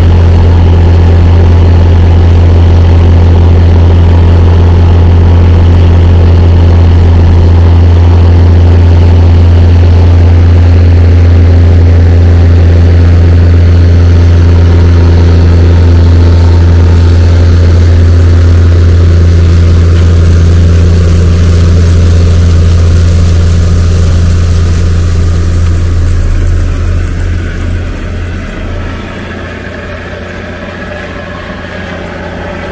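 Case IH Quadtrac tractor's diesel engine running steadily under load as it tows a Morris air seeder cart and seeding bar past, a deep steady drone. It fades away over the last few seconds.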